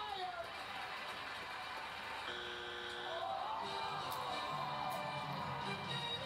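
Game-show audio played from a television: a studio audience cheering and shouting, with game-show music coming in about two seconds in.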